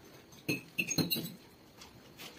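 Metal forks clinking and scraping against glass plates while noodles are eaten, a short run of sharp clinks with a brief ring, about half a second in and again around one second in.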